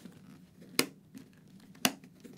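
Plastic chin-bar vent slider on a motorcycle helmet being clicked between its positions: two sharp clicks about a second apart, with a fainter tick between.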